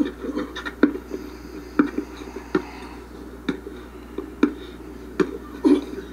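A basketball being dribbled on an outdoor court, bouncing off the hard surface at a slow, steady pace of about one bounce a second.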